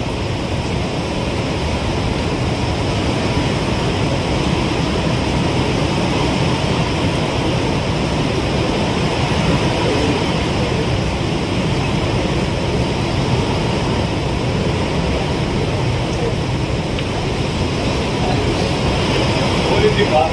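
Steady rushing background noise with faint, indistinct voices under it.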